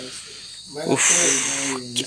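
A cricket's high, even trill starts about a second in and stops shortly before the end, over a man's drawn-out voice.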